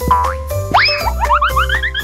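Cartoon sound effects over bouncy children's instrumental music. A short upward boing comes at the start, then a long rising swoop, then a quick run of short rising chirps that step up in pitch.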